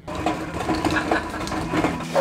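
A jumble of knocks, bumps and scrapes as a heavy packing crate holding a jointer is handled and shifted, over a low steady hum.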